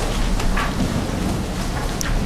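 Paper rustling as several people leaf through printed documents at once, an even rough noise over a steady low hum from the room's sound system.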